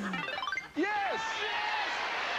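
Television game show audio: a voice with a single rising-and-falling glide in pitch about a second in, over background music.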